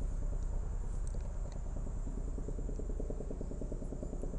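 Police helicopter overhead, its rotor making a steady, low chop that slowly fades as it flies off.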